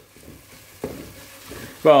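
Wooden spatula stirring onion-tomato masala frying in an aluminium pressure cooker: a soft sizzle with scraping, and a single light knock a little under a second in.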